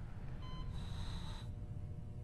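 Quiet operating-room background: a low steady hum with a faint short electronic beep about half a second in.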